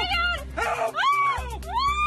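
People screaming and shouting in alarm ("Hey! Hey!", "Oh my God!") at a lion attack, in two long high-pitched cries, with background music underneath.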